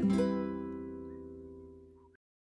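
The last chord of a children's song, on plucked string instruments, ringing out and fading away steadily.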